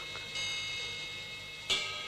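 Bell-like metallic chimes: one struck about a third of a second in and left ringing with several high steady tones, another struck sharply near the end.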